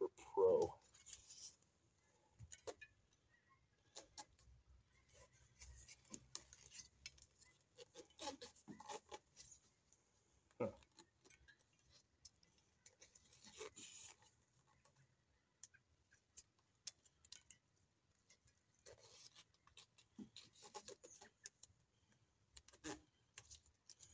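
Bicycle handlebar tape being stretched and wound around a drop handlebar by hand: faint, intermittent rubbing and crinkling with scattered small clicks.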